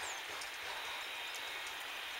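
Steady outdoor background noise at a moderate level, with no distinct event.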